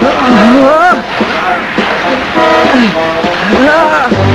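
Cartoon sound effects of loud rushing, splashing sea water, with a voice letting out strained yells that dip and rise in pitch several times.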